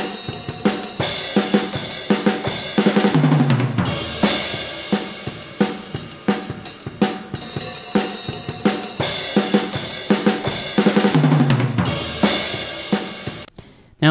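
Playback of a recorded acoustic drum kit heard through only a spaced pair of small-diaphragm condenser overhead mics: a beat of kick, snare and cymbals with a tom roll falling in pitch, the loop played twice. Without the close mics it sounds a little bit thin.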